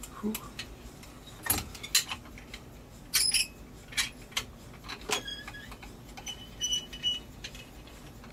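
A series of sharp metallic clicks and clinks, about eight spread irregularly over several seconds, from a steel wrench and strap-and-gauge pulling rig held fast by an MRI magnet under tension. A couple of brief high ringing tones come about five and six and a half seconds in.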